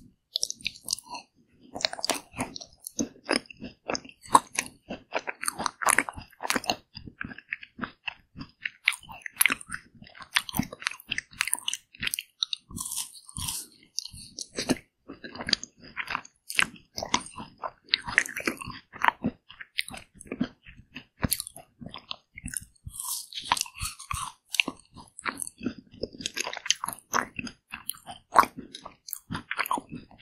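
Close-miked biting and chewing of a Pink Pig Bar (Dwaeji-bar), an ice cream bar with a crunchy pink-and-white crumb coating. Crisp crunching crackles come one after another, with short pauses between mouthfuls.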